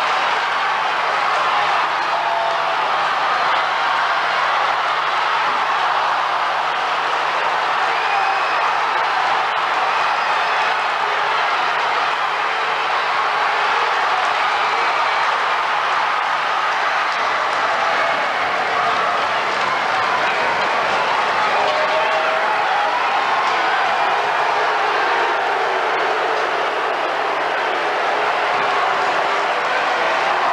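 Ice hockey arena crowd: a steady, loud din of cheering and applause.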